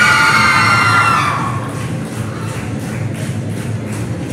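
Recorded dance music played over a hall's speakers, with a shrill, sustained cheer from a crowd of children that fades out about a second and a half in. After that the music carries on with a steady beat.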